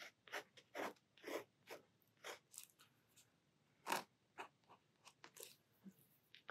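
Tip of a white acrylic paint marker dabbing and stroking on sketchbook paper, faint short irregular taps and scratches as white details are added to the painting.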